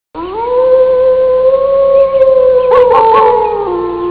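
A wolf howl: one long call that rises at the start, holds a steady pitch, wavers briefly about three seconds in, then drops lower toward the end.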